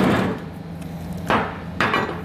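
Steel mounting bracket of an air helper spring kit handled and set down on a workbench: one knock at the start, then two more shorter knocks near the end.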